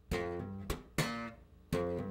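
Bass guitar playing a slow G minor funk groove built on hammer-ons, percussive hand hits and plucks. About four sharply attacked notes ring out, spaced well apart.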